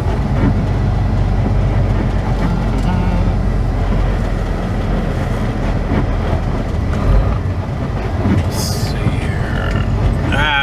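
Semi truck's diesel engine running as the truck rolls slowly, heard from inside the cab as a steady low rumble. A short hiss comes about eight and a half seconds in.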